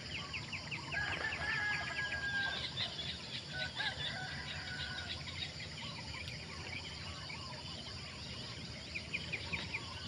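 A rooster crowing, two long held notes in the first half, with other birds calling in rapid chattering runs at the start and again near the end. A steady low rumble lies underneath.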